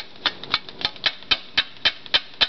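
Quick, evenly spaced hard taps, about four or five a second, of something repeatedly striking a hard surface as someone keeps hitting at a bug.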